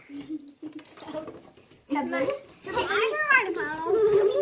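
Children's voices, talking and calling out, quiet for the first two seconds and louder in the second half.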